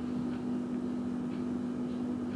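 A steady low hum held at one pitch, over faint background noise.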